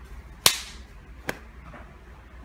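Two sharp slaps: a loud one about half a second in, then a fainter one just under a second later.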